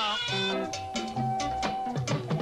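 Band music from an archival Senegalese TV performance: a bass line of repeating low notes and percussion, with one long held note from under a second in to near the end. A sung line glides down and ends right at the start.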